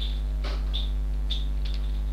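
Steady electrical mains hum on the recording, with a few faint computer-keyboard keystrokes clicking through it as code is typed.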